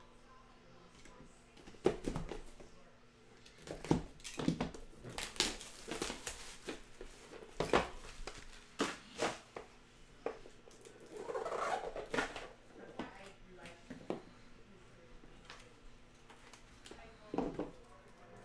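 Plastic shrink wrap being cut and pulled off a trading-card box, with crinkling, and scattered taps and knocks as the cardboard box is handled and its lid lifted off.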